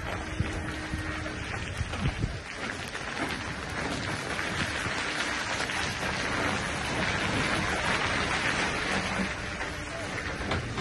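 Loaded Scania log truck and trailer moving slowly through a tight turn: a steady hiss of tyres on a gritty road that grows louder about four seconds in, over a low engine rumble, with a few knocks in the first two seconds.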